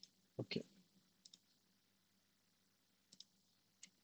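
Computer mouse clicking: a few short, sparse clicks, the loudest a pair about half a second in, then lighter double clicks, with near silence in between.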